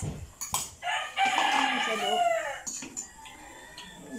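A rooster crowing once, a call of about a second and a half, preceded by a couple of clinks of spoons against bowls.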